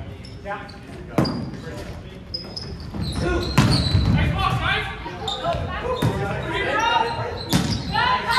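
A volleyball being struck several times during a rally, with sharp hits echoing in a large gymnasium. Players' voices call out over the play, busier in the second half.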